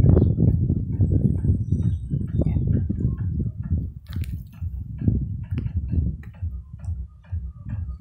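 Wind buffeting the phone's microphone in a heavy rumble, with many light, scattered clicks and ticks over it.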